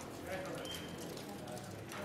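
Indistinct voices over a low, steady hum.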